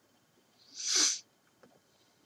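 A single short breath, a voiceless rush of air, about a second in.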